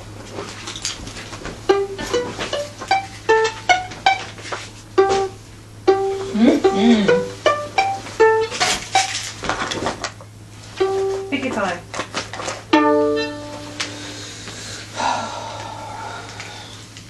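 A violin played pizzicato: single plucked notes one after another, in short phrases with pauses between them, as a beginner works slowly through a book exercise.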